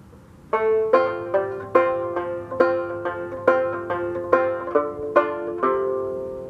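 Fairbanks Special #4 fretless open-back banjo picked in an even run of single notes, about two a second, starting about half a second in, with the last note left ringing.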